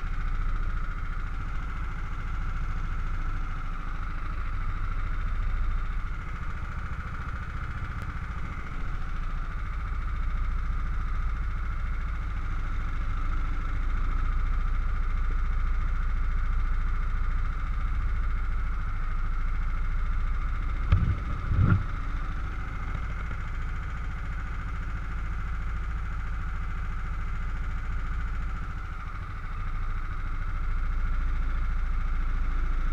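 Racing kart engine idling steadily with the kart standing still. Two short louder bursts come a little over two-thirds of the way through.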